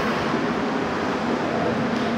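Steady wash of outdoor background noise, even throughout with no distinct events.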